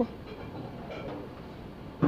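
Faint steady background noise, with a few faint voice-like traces about a second in.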